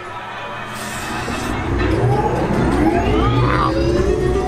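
Slinky Dog Dash coaster train picking up speed on its launch, with a rising whine from the launch motors over a low wheel rumble, and ride music playing along.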